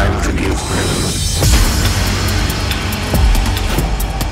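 Uptempo hardcore electronic music: a stretch of dense, rapid clicking effects with a couple of deep kick-drum hits.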